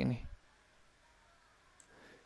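A man's voice finishes a word at the very start, then near silence with a single faint click near the end.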